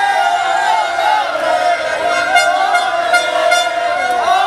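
Several plastic fan horns blowing long, overlapping notes over a cheering, shouting crowd.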